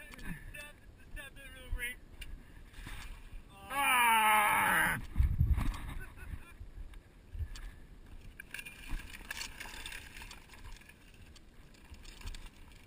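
A person's loud, drawn-out call about four seconds in, lasting about a second and bending in pitch, followed by a deep thump. Otherwise faint rustling and handling noise.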